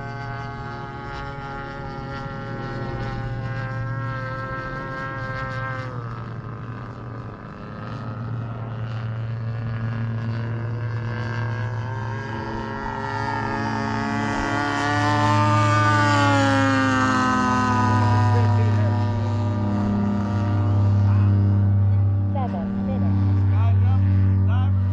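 Propeller engine of a T-28 Trojan in flight, a steady drone that drops in pitch about six seconds in. It grows louder from about halfway as the plane comes in low, and its pitch falls as it passes.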